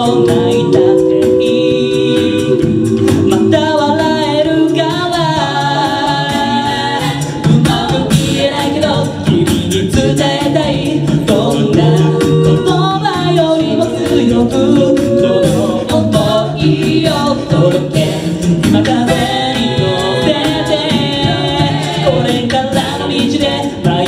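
Six-voice mixed a cappella group singing a pop song into microphones: a lead melody over sung harmonies, with a low held bass line and a steady clicking beat.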